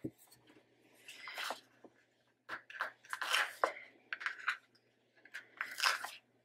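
Hands handling paper stickers and planner pages: short, soft paper rustles and scrapes in scattered groups, about a second in, again from about two and a half to four and a half seconds, and near the end.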